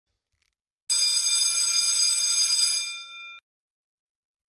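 A bell ringing continuously, starting suddenly about a second in, holding steady for about two seconds, then fading and cutting off.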